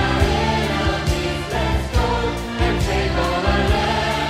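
Live praise-and-worship music: voices singing together over a band with a steady drum beat.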